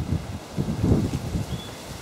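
Wind buffeting the camera's microphone in irregular low rumbling gusts, heaviest in the first second.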